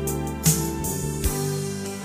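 Instrumental worship-song backing track: sustained pitched chords, with a sharp percussive hit about half a second in.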